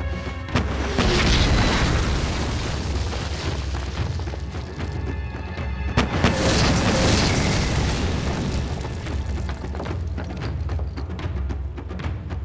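Two explosion booms about five and a half seconds apart, each dying away over a couple of seconds, over a tense orchestral score.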